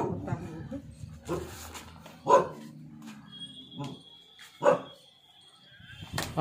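A dog barking: four short barks spaced about a second apart. A thin, steady high tone sets in about halfway through and runs under the last barks.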